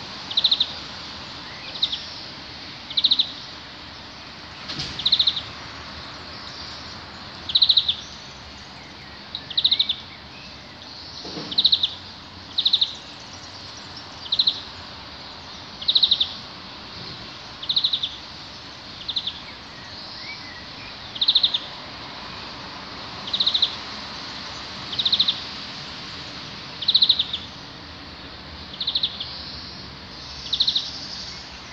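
A bird repeating one short, high, rapidly pulsed call about every one to two seconds, over a steady background hiss.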